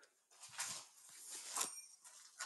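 Faint rustling and handling noise close to the microphone, swelling softly about a second in, between stretches of talk.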